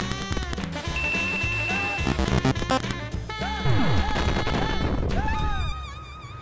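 8-bit-style video-game music with beeping sound effects, full of short bleeps, held tones and quick swoops up and down in pitch.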